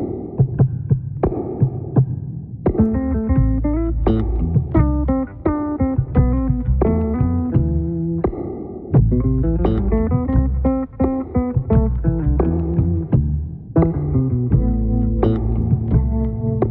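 Instrumental track played only on multitracked bass guitars: sharp percussive clicks in a steady beat over a low drone, joined about three seconds in by a deep bass line and quick plucked melodic notes higher up.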